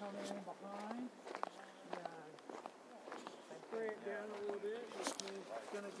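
Footsteps on dry, gravelly ground, several irregular steps with a few sharp clicks, while people talk in the background.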